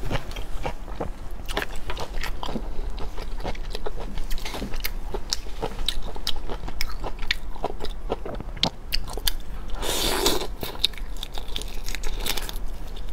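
Close-miked chewing and biting of raw shrimp and tobiko fish roe: a steady run of small wet clicks and crunches. A louder, longer burst of noise comes about ten seconds in, as the shrimp is brought to the mouth.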